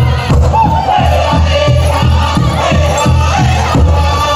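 Powwow drum group singing in high, wavering voices over a fast, steady beat on a large drum.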